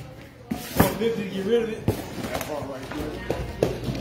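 Indistinct talking with a few sharp knocks from cardboard boxes being handled, about half a second in, just under a second in and just under two seconds in.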